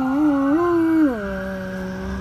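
Great Pyrenees dog howling: a wavering note that steps up in pitch, then drops about a second in and settles into a lower, steady held tone.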